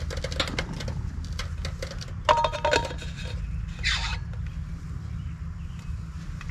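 Light clicks and knocks of a Coleman camp coffee maker and propane stove being handled, mostly in the first second. A short chirp follows about two seconds in and a brief hiss near four seconds, over a steady low rumble.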